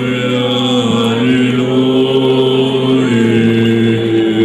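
Byzantine chant sung by male voices: a slowly moving melody held over a steady low drone.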